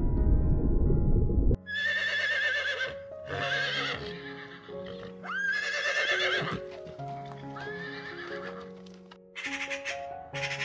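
A loud low rumble cuts off suddenly about a second and a half in, and a horse then whinnies four times, each call wavering, one sweeping up in pitch, over soft background music. Near the end a Eurasian magpie starts a fast rattling chatter.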